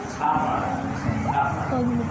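A man's voice preaching into a handheld microphone, with a dog's short yelps or barks in the background.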